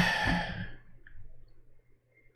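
A man's sigh, a breathy exhale that fades out over the first second after a short click, then quiet room tone with a faint low hum.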